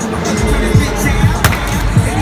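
A hammer comes down once on the strike pad of an arcade hammer strength-tester, a single sharp hit about a second and a half in. Background music with a steady thumping beat plays throughout.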